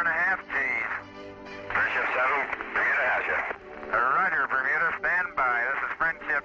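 A man's voice over a narrow, distorted air-to-ground radio link, in short phrases, with music underneath.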